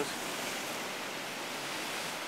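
Ocean surf breaking and washing along a pebble beach: a steady rushing noise with no distinct crashes.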